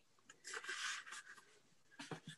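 A faint, brief rustle, lasting under a second.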